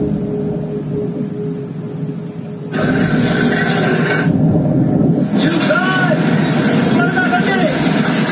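Film soundtrack played over a 7.1 AV receiver and its speakers, heard in the room: a low underwater rumble, then about three seconds in a sudden louder wash of sea and boat noise, with shouting voices over it from about five seconds in.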